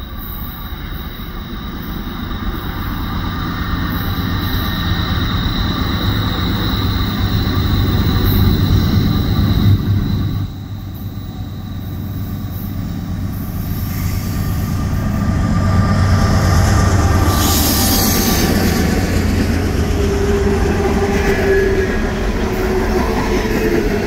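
Norfolk Southern coal train running along curved track: a steady low rumble of locomotive and rolling wheels, with thin wheel squeal over it. The sound drops abruptly about ten seconds in, then builds as the train draws near, and the coal hoppers roll past loud and steady with flange squeal near the end.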